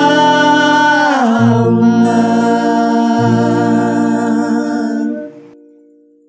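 A vocal trio sings the final held note of a gospel song over instrumental accompaniment. The chords change twice underneath, and the music fades out a little after five seconds in.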